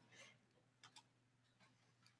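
Near silence: room tone with a low steady hum and a few faint, short clicks.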